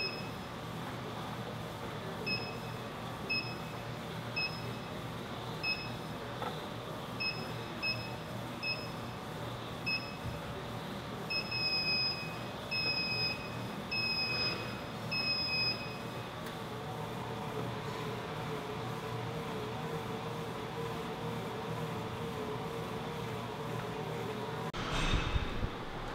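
Electronic beeps from a Matrix elliptical's console: about a dozen short beeps at irregular spacing, the last four longer, stopping about two-thirds of the way in. A steady low machine hum runs underneath.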